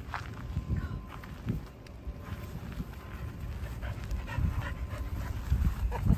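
A dog panting, over a steady low rumble.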